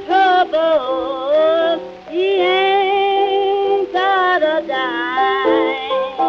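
Blues song: a woman sings long, wavering, bending held notes over a piano accompaniment.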